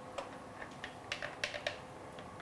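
Spatula scraping and tapping against the plastic blender bowl of a Beaba Babycook as puree is scooped out: several light clicks, most of them in the second half.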